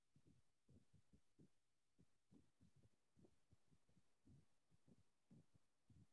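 Near silence, with faint, muffled low sounds coming and going several times a second.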